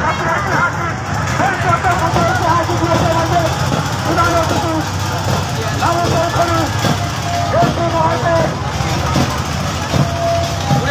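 Many voices shouting and cheering over each other, over a steady low hum that fits a motorboat engine.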